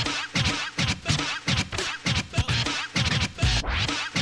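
Turntable scratching: a vinyl record cut back and forth in quick, chopped strokes over a backing beat with a thudding bass.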